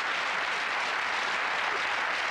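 Studio audience applauding steadily as the contestant completes the money round.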